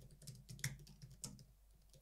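Typing on a computer keyboard: a faint, quick run of keystrokes that stops about a second and a half in.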